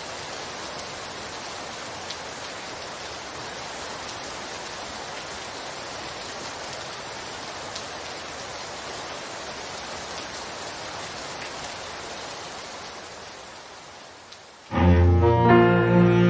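Steady hiss of rain with a few faint drop ticks, easing off slightly. Near the end, loud instrumental music cuts in with sustained low notes.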